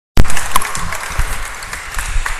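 Audience applauding, loud at first and dying away.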